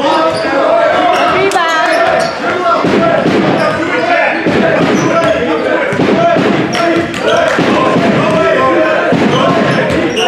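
Basketball being dribbled on a hardwood gym floor, a run of sharp bounces echoing in the large gym, under the steady chatter and shouts of players and spectators.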